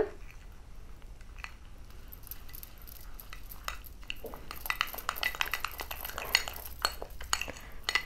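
A spoon stirring a thick, gritty paste of banana, sugar and rice flour in a glass bowl, clinking and scraping against the glass. The strokes are scattered at first and grow busier from about halfway.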